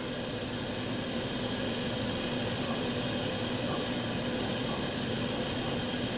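Steady hiss with a faint low hum from a gas stove burner heating water in a stainless steel stovetop percolator. The water is heating and has not yet begun to percolate.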